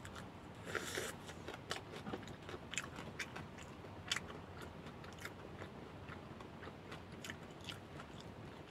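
A person chewing and biting food with faint, irregular crunches and small clicks, one slightly longer crunch about a second in.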